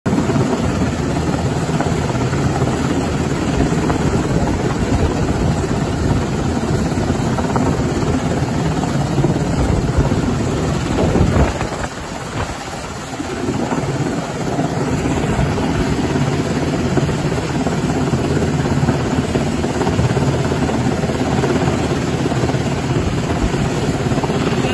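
Coast Guard rescue helicopter hovering overhead: steady rotor and engine noise that briefly dips about halfway through.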